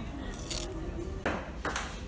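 Table tennis rally: a celluloid ball clicking sharply off the paddles and the table, a few hits under a second apart.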